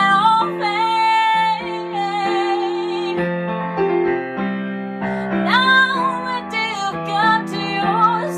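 A woman singing to her own piano accompaniment on a keyboard, the piano holding sustained chords throughout. Her voice falls away for about two seconds in the middle while the piano carries on, then comes back in.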